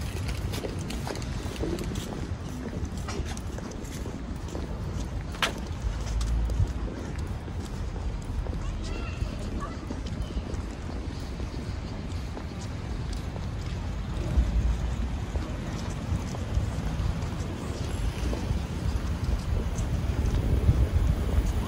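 Footsteps on brick paving, a string of light irregular taps, with a low rumble that swells now and then.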